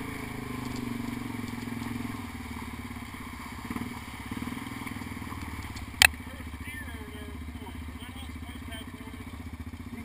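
ATV engine running, louder for the first couple of seconds and then easing back to a low, steady run. A single sharp knock comes about six seconds in.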